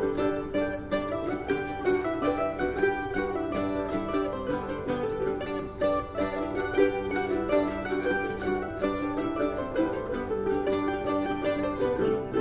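Mandolin orchestra playing a fast Bulgarian ruchenitsa in seven: dense, rapid picked notes from many mandolins over a steady low bass line, in a raucous style imitating a Balkan brass band.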